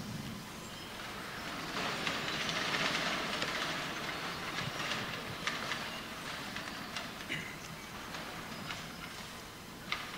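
An audience getting to its feet: a broad shuffling rustle of many people that swells over the first few seconds and then slowly fades, with a few faint clicks.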